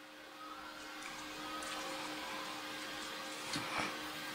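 Quiet room tone: a faint steady hum and hiss that grows slightly louder, with a few soft handling rustles from the cotton twine and crochet hook near the end.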